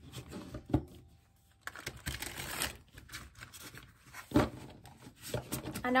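A deck of silver-edged tarot cards being shuffled by hand: cards sliding and rustling against each other, with a couple of sharp taps, one about a second in and one near the end.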